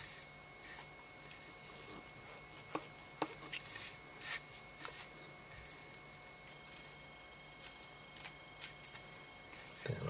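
Faint rustling and scattered light clicks of fingers handling and pulling strands of synthetic holographic flash tinsel tied to a hook in a fly-tying vise, over a faint steady hum.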